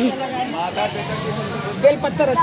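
Several people talking at a street stall, with a low murmur of traffic behind the voices.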